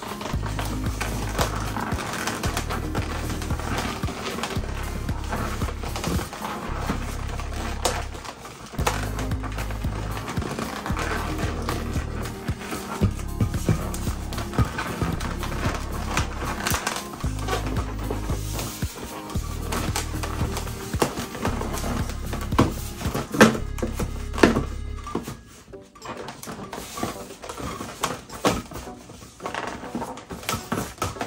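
Background music with a repeating bass line that stops about 25 seconds in. Under and after it, the rubbing, squeaks and taps of latex modelling balloons being twisted and handled.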